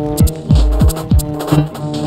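Double bass and modular synthesizer music: steady low held notes under a repeating pattern of short electronic thumps that drop steeply in pitch, about two a second, with short ticks up high.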